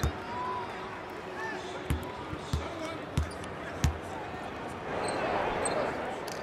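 A basketball bouncing on the hardwood court: one bounce at the start, then four evenly spaced bounces about two-thirds of a second apart, over a low arena murmur of voices.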